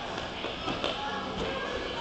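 Background chatter and music in a climbing gym. Three short knocks fall a little under a second in and again at about a second and a half.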